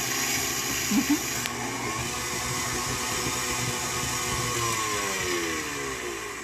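KitchenAid Artisan stand mixer running, its flat beater creaming butter and sugar in the stainless steel bowl, with a steady motor whine. There is a brief louder blip about a second in, and the motor pitch drops near the end as the mixer slows down.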